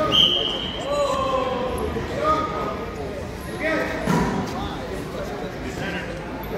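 Unclear voices of spectators and coaches talking and calling out in a gymnasium, with a short high whistle blast just after the start and a dull thud about four seconds in.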